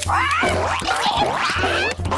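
A cartoon voice squawking like a parrot: several wavering, rising and falling screeches.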